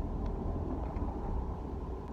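Car engine and road noise heard from inside the cabin: a steady low rumble.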